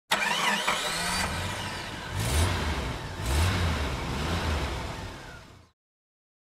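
A vehicle engine starting, revved twice in quick surges, then fading out.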